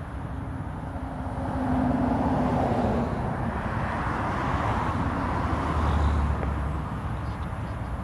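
Road traffic noise: passing vehicles give a steady rush that swells twice, about two seconds in and again near six seconds.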